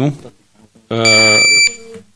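A short, loud, steady high-pitched electronic beep, about half a second long, over a man's drawn-out hesitation sound into the microphone.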